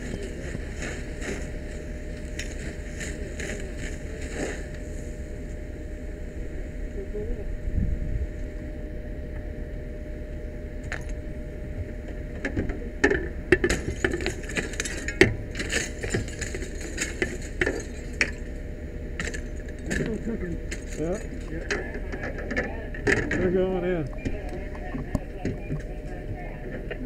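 A fire apparatus engine runs in a steady low rumble while a hose stream hisses against the windows for the first several seconds. About halfway through come a run of sharp knocks and clinks as a pike pole is worked at the window, and muffled voices follow near the end.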